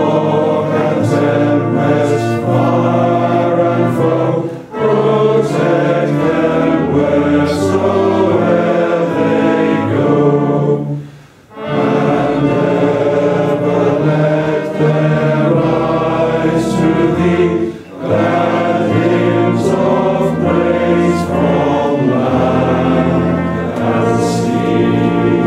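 A congregation singing a hymn together, phrase by phrase, with brief pauses between the lines.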